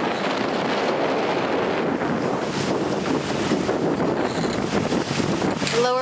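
Steady wind buffeting the microphone aboard a sailboat under sail in strong wind, with the rush of the sea beneath it.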